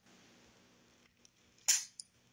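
Near silence broken by one short, sharp hiss about a second and a half in, from the man close to the phone's microphone, a quick breath or mouth sound as he gets ready to speak again.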